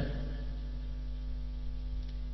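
Steady electrical mains hum: one unchanging low buzz with a stack of evenly spaced overtones, the background noise of the recording.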